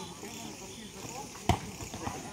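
Night insects chirring steadily in a high, even drone, with one sharp smack about one and a half seconds in, like a volleyball being struck.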